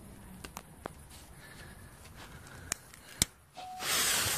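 A few faint clicks, then near the end a firecracker's fuse catches and starts fizzing loudly.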